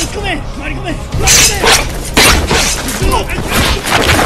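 Fight-scene sound effects: a quick run of four or five sharp hits, starting about a second in, mixed with shouting men and a music score.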